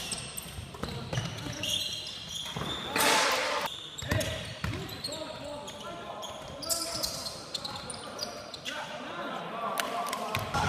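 Basketball game in an echoing gym: the ball bouncing on the court, with players calling out to each other. There is a brief burst of noise about three seconds in.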